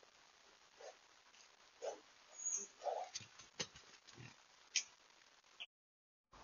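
Wild boar grunting softly a few times, about a second apart, close to the camera, followed by rustling and several sharp knocks, the loudest a little under five seconds in. The sound cuts off abruptly near the end.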